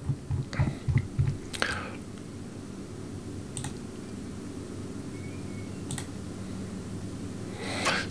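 A few sharp computer mouse clicks a second or two apart, over a steady low hum, with some soft low thumps in the first second or so.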